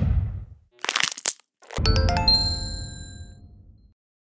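Animated outro sound effects: a low whoosh dies away, a short swishing burst comes about a second in, then a deep hit with bright bell-like chimes that ring and fade out over about two seconds.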